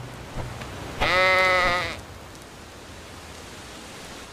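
A single bleat, a bit under a second long, slightly wavering in pitch, voiced for a round, furry cartoon animal. A faint steady hiss runs under it.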